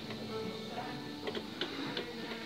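Faint background music, steady, with a few light clicks near the end.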